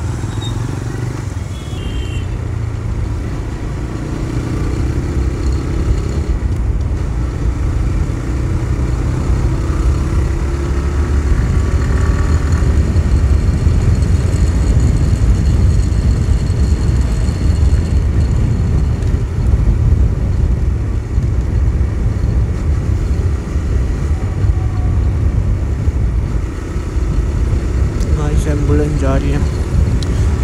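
TVS Raider 125 single-cylinder motorcycle engine running under way, heard through heavy wind noise on the rider's microphone. The engine note rises over the first several seconds as the bike accelerates to about 60 km/h on an open road.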